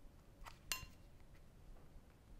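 A metal walnut-shaped cookie mold clinking as it is knocked while dough is trimmed around its edge. There is a faint click, then about a quarter second later a sharper clink that rings briefly.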